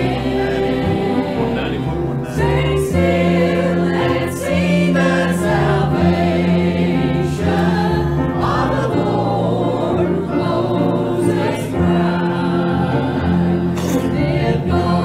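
Church choir singing a gospel song, continuous and full over sustained low held notes.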